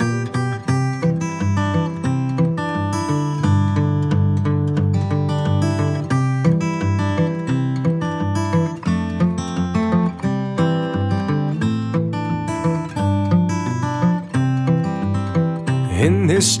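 Instrumental break of a country ballad: acoustic guitar strumming and picking, with no vocals.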